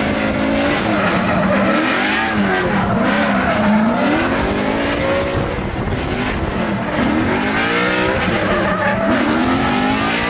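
HGK BMW F22 'Eurofighter' drift car's engine revving up and falling back again and again as it slides sideways, with its spinning rear tyres squealing on the tarmac.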